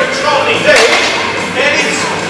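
Loaded deadlift barbell with bumper plates set down on the lifting platform after the lift, with one sharp thud about two-thirds of a second in, over voices.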